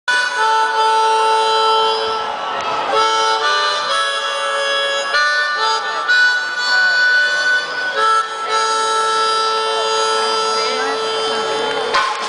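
Harmonica playing a slow line of long held notes and chords, amplified through a stadium PA and heard from the crowd.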